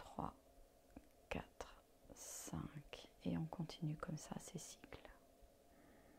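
A woman's soft, near-whispered voice counting out a slow breath, pacing the exhale of a cardiac-coherence breathing exercise, with a few faint mouth or breath clicks before it.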